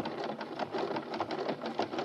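Radio-drama sound effect of the 'logic' computer working on a spoken question: a rapid, continuous clatter of mechanical clicks, like a teleprinter, before it gives its answer.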